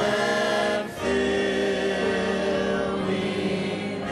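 A congregation singing together in long held notes, with a short break just before a second in.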